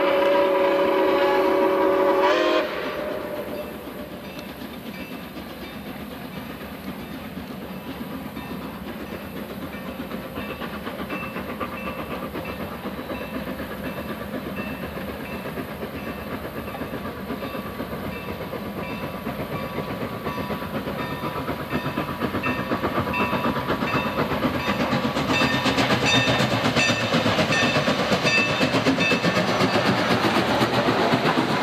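Steam whistle of Milwaukee Road 261, a 4-8-4 steam locomotive, blowing a loud chord of several notes for about two and a half seconds, then cutting off suddenly. A train's rumble then grows steadily louder as it approaches, with wheels clicking in a steady rhythm over the rail joints as it passes close near the end.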